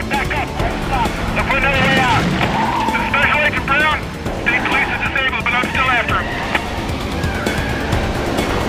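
Car tires squealing in three wavering spells through the middle of the chase, over the low rumble of engines.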